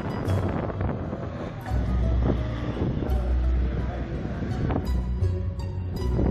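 Wind buffeting an outdoor microphone: a rough, uneven rumble that gets heavier about two seconds in. Faint music and distant voices sit underneath.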